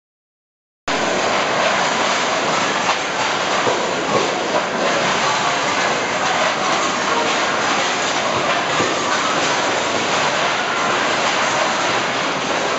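Silent for about the first second, then a sudden, loud, continuous din of stainless-steel plates clattering against each other and the metal washing troughs as crowds wash dishes, with a wash of water and voices under it.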